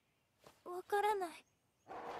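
A dog's short whine from the anime soundtrack: a pitched call about half a second in that rises and then falls away, followed near the end by a soft rustling hiss.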